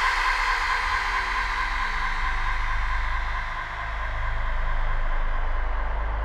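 Beatless breakdown in a psytrance DJ mix: held synth tones fade away over a low, slowly pulsing drone that swells in about two seconds in, with no kick drum.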